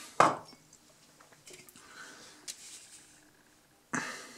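A glass mug set down on a wooden floor with one sharp knock about a quarter second in, followed by faint handling rustles and a light click.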